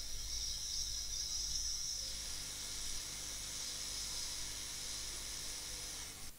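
Hot-air rework station blowing a steady hiss of hot air onto a small surface-mount chip to melt its solder for removal.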